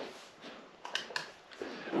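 Wall light switch being flipped: a few short, quiet clicks about a second in, over faint room noise.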